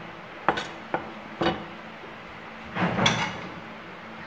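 A cleaver chopping ginger on a wooden cutting board: three sharp knocks about half a second apart, then a longer, rougher clatter near the end.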